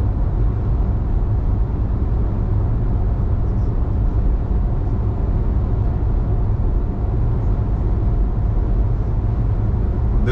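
Steady low rumble of road and engine noise heard inside a car cruising at freeway speed.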